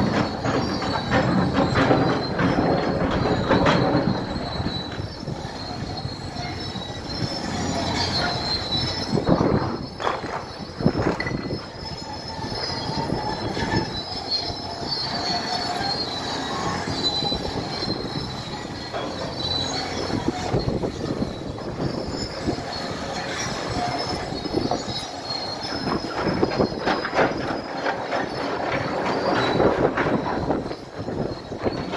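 Large crawler bulldozer on the move, its steel tracks squealing and clanking over the running diesel engine. The high, wavering squeal goes on throughout, with scattered knocks.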